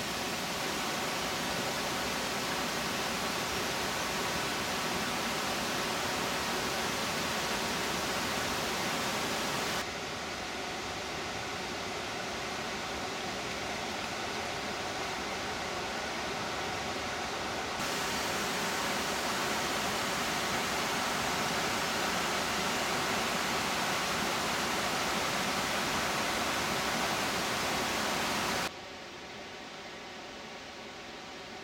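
Steady rush of water pouring over the Horseshoe Falls weir on the River Dee. Its loudness shifts twice, about ten and eighteen seconds in, and it drops sharply near the end.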